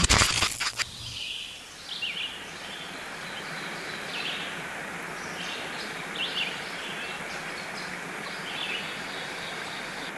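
A short burst of crackling digital-glitch static in the first second, then steady outdoor ambient noise with scattered short bird chirps.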